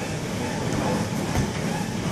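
Steady rumbling background noise of a large room, with faint indistinct voices mixed in.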